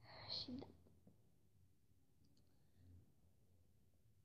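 A brief breathy, whispered vocal sound from a girl that falls in pitch, then near silence with a few faint clicks.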